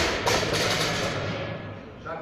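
Barbell loaded with bumper plates dropped from the hips onto a rubber gym floor: it hits, bounces once about a quarter second later, and the noise dies away over about a second and a half.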